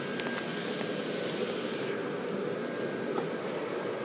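Steady background noise with a few faint clicks.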